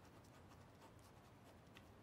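Near silence: quiet room tone with a few faint soft ticks.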